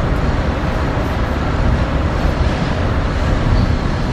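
Steady, deep running noise of a moving passenger train, heard from inside the passenger car.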